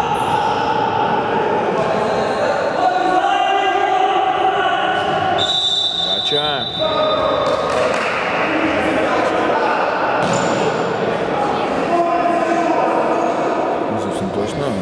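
A futsal ball being kicked and bouncing on the hard floor of a large sports hall, with players' shouts echoing. A single high whistle blast lasting about two seconds sounds near the middle.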